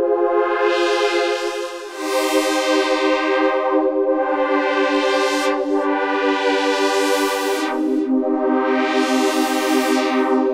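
Korg Prologue-16 analog polysynth playing a held pad chord progression while its analog filter cutoff is swept up and down, the sound repeatedly brightening and darkening. The chords change about two seconds in and again near eight seconds.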